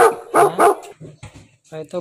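Dog barking three times in quick succession, short loud barks in the first second.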